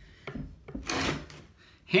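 A short scrape of a steel plate-and-peg tool shifted on wooden floorboards, strongest about a second in, with a fainter rub just before it.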